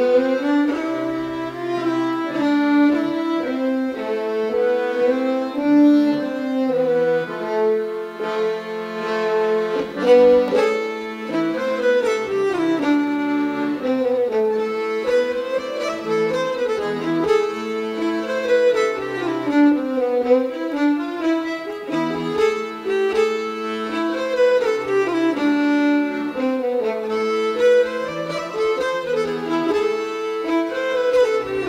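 Instrumental folk tune played by an ensemble, with fiddle carrying the melody over button accordion accompaniment and held low notes.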